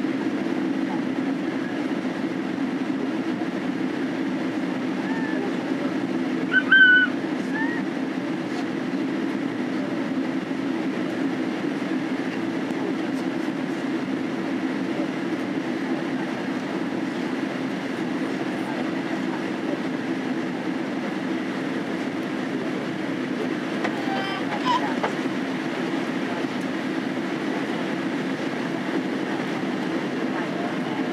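Steady low cabin drone of a Boeing 767-300 in descent, from its engines and the airflow, heard inside the cabin while the wing's spoilers are raised as speed brakes. A brief higher-pitched sound about seven seconds in is the loudest moment, with a fainter one near the end.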